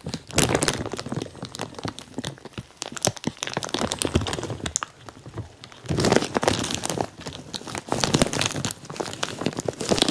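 Dense, irregular crinkling and crackling close to the microphone, the sound of material rubbing against the camera, with louder stretches just after the start and again from about six seconds in.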